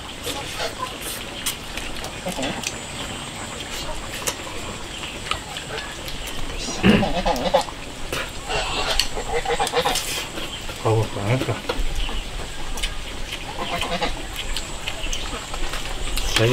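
People eating from bowls: chopsticks clicking against the bowls, chewing and slurping, with a few short hummed "mm" sounds.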